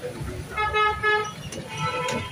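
A vehicle horn honks for just under a second, steady in pitch, and a second, shorter toot follows near the end. Underneath is the hiss of dal vadas deep-frying in a kadai of oil.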